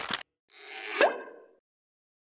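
A logo sound effect: a whoosh that swells up with a quick rising tone at its peak about a second in, then fades away. A brief swish ends just at the start.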